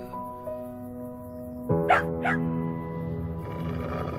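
Slow, soft music with long held notes, and two short high-pitched yelps from a puppy about two seconds in.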